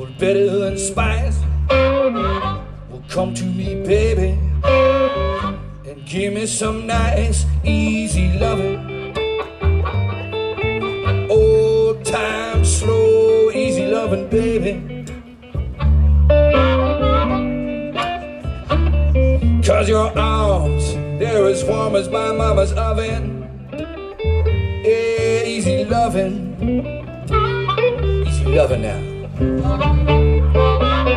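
Blues band playing live: a harmonica cupped to a vocal microphone plays a lead line with bending notes over upright double bass and electric guitar.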